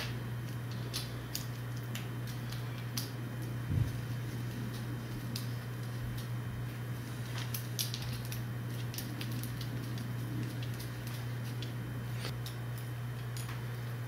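Faint scattered metallic clicks and taps as stainless steel hard lines and AN fittings are handled and threaded on loosely by hand, with a soft thump about four seconds in. A steady low hum runs underneath.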